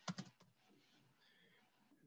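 Keystrokes on a computer keyboard: a quick run of about five key presses in the first half second as a search word is typed.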